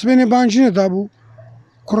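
Only speech: a man talking loudly into the microphone for about a second, a short pause, then talking again near the end.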